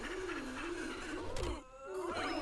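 An anime character's voice giving a long, wavering groan, with a thud about a second and a half in.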